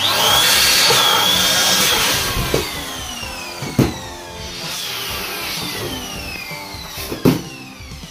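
Electric balloon inflator pump switching on abruptly and running with a loud whirring rush, its high whine falling in pitch several times. Two sharp knocks come about four seconds in and near the end.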